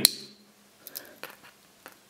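Small metal clicks of a Victorinox Huntsman Swiss Army knife's tools being handled: one sharp click right at the start, then a few faint ticks about a second in as the next tool is worked open.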